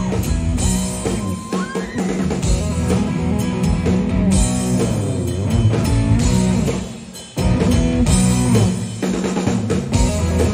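Live rock band playing an instrumental passage on electric guitars, bass guitar and drum kit, with a guitar string bend rising about a second and a half in. Around seven seconds in the band drops away briefly, then comes back in together.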